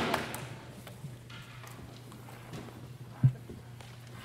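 Audience applause dying away in the first second, then a quiet hall with a steady low hum and a single loud thump about three seconds in.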